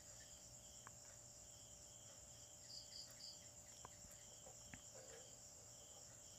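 Near silence: faint background insect chirring, steady and high, with a few soft clicks.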